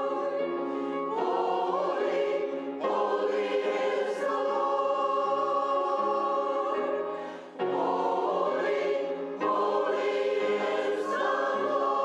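Mixed church choir singing an anthem in sustained phrases, with brief pauses between phrases.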